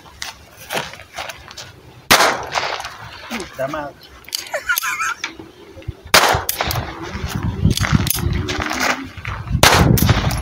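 Handgun shots: a single shot about two seconds in, then a fast string of shots from about six seconds in, running to the end.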